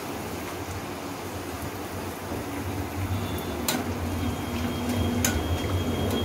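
Papdi deep-frying in hot oil in a kadai, a steady sizzle over a low hum. A wire-mesh skimmer clicks against the pan twice in the second half as the crisps are turned.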